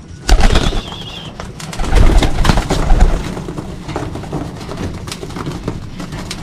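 Racing pigeons cooing in their loft, with many small clicks throughout and louder, rougher bursts about half a second in and again from about two to three seconds in.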